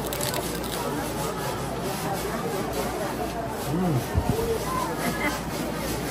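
Voices and chatter of a busy open-air restaurant, with crisp crunching as a fried tostada is bitten and chewed, most marked just at the start, and one drawn-out murmur from a voice about four seconds in.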